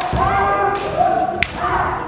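Naginata competitors' kiai, long held shouts that rise and fall in pitch. A sharp clack of a naginata strike or shaft contact comes at the start and another about a second and a half in, with low thuds of footwork on the wooden floor.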